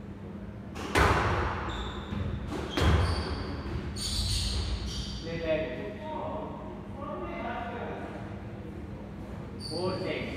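A squash ball is struck hard twice, with loud impacts about one and three seconds in that echo round the court. Short high squeaks come from shoes on the wooden floor, then men's voices talk briefly.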